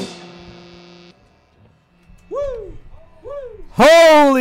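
The last chord of a punk rock band's electric guitars rings out and cuts off suddenly about a second in. Then a man whoops twice, and a third, louder whoop comes near the end.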